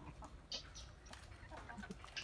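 Faint low clucks from a rooster, with a brief high chirp about half a second in.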